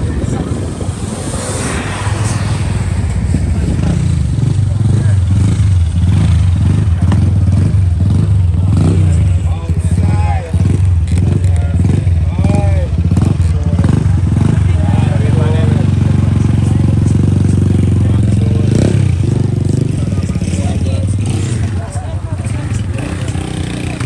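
A vehicle engine running steadily close by, loud and low, with indistinct voices of people talking over it. It builds over the first few seconds and eases off near the end.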